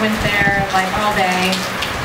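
A man talking, with a steady hiss of background noise behind his voice.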